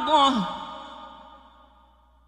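A male Quran reciter's voice ending a long, ornamented held note in tajweed recitation, the pitch wavering and then falling away about half a second in. A reverberant tail follows and fades out to near silence.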